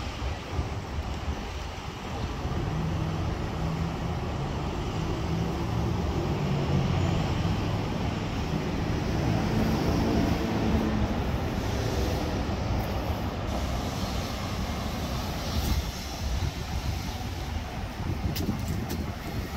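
Downtown street traffic with a heavy vehicle's low engine drone that swells in the middle and rises a little in pitch before fading back into the general rumble.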